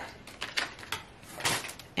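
Munchkin plastic dishwasher basket being handled and opened: a few light plastic clicks and rattles, the loudest about one and a half seconds in.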